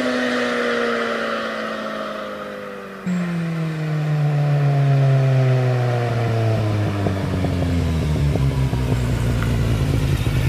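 Kawasaki Z750 inline-four with its exhaust baffle (dB killer) removed, run on the road and coming closer. Its exhaust note drops steadily in pitch throughout. There is an abrupt jump in loudness about three seconds in, and the low rumble grows louder near the end as the bike nears.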